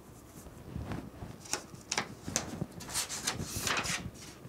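Handling noises: a knit work glove being pulled on, then light clicks and paper rustling as the printed photo panel is peeled away from its sublimation print, with a longer rustle near the end.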